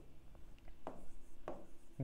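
A stylus tapping and scratching on an interactive smartboard screen: a few light taps and short writing strokes.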